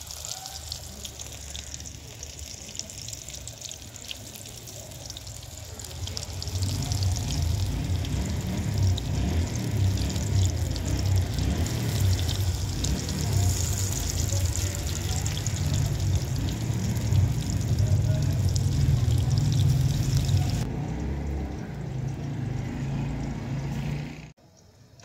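Pakora batter frying in hot oil in an iron karahi: a steady sizzle with fine crackling. From about six seconds in, a louder low rumble joins it.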